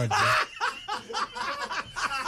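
Several people laughing hard together: a loud burst of laughter at the start, then short repeated laugh pulses.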